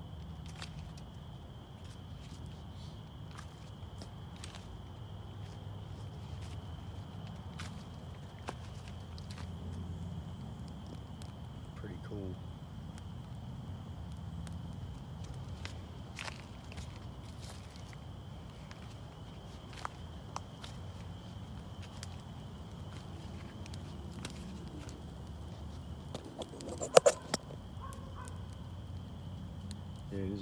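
Small wood fire crackling with scattered light pops over a steady low rumble. A dog barks loudly, a short bark near the end.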